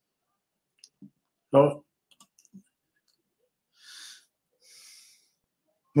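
Mostly silence from a man at a desk microphone, broken by one short spoken word about a second and a half in, a few faint mouth clicks, and two soft breaths near the end.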